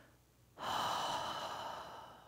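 A long, deep breath out, starting about half a second in and fading away over about a second and a half.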